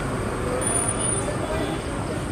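Steady outdoor street noise with road traffic in the background, an even hum without any single standout event.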